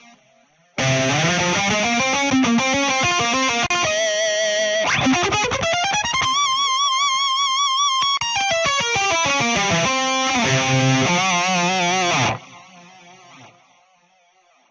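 Sampled electric guitar solo from the Prominy SC library, played back from MIDI through the Revalver MkIII amp simulator's high-gain 6505 Lead preset with a stereo delay. A run of notes climbs to a long high note with wide vibrato, then falls away. It stops about 12 seconds in, leaving a short fading delay tail.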